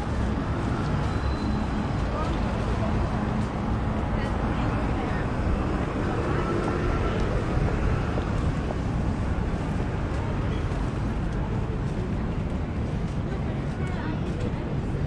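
Steady city-street background: a constant low rumble of road traffic, with faint, indistinct voices of passers-by.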